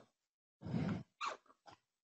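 A man's voice, quiet and brief: a murmur of about half a second followed by two shorter blips.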